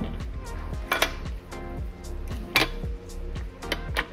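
A few sharp metallic clinks as a BMW M50 non-VANOS intake camshaft is laid into the cylinder head's cam journals, over background music.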